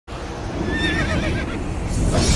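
A horse whinnying, one wavering high call about half a second in that fades by the middle, over a steady low rumble.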